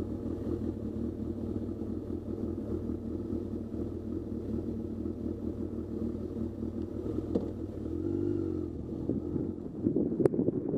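Motorcycle engine running steadily at low speed, with a single click about seven seconds in and a brief rise and fall in the engine note shortly after.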